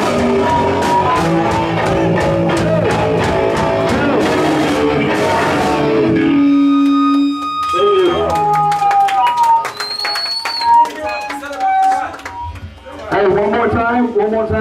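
A hardcore punk band playing live, loud with drums and guitars, until the song stops abruptly about six seconds in. After that a held note rings briefly, then scattered guitar notes, clicks and voices fill the gap, and talking begins near the end.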